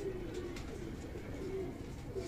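Domestic pigeons cooing: a run of soft, low, rolling coos.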